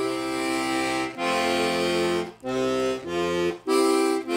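Castagnari Rik diatonic button accordion sounding its left-hand bass and chord buttons on the master stop, with both octaves in the bass and the full triad. About five held bass notes and chords are played one after another, each cut off cleanly before the next.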